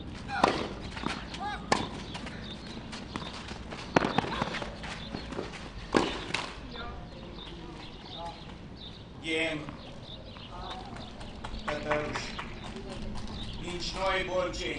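Tennis ball struck by rackets in a short rally on a clay court: four sharp hits about two seconds apart, the first as the serve is struck. After the rally a voice is heard briefly twice.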